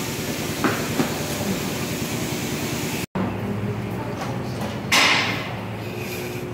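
Tire-shop air tools working on a car's rear wheel: a steady, rapid mechanical rattle, then, after a sudden cut, a steady hum and a short, loud burst of hiss about five seconds in.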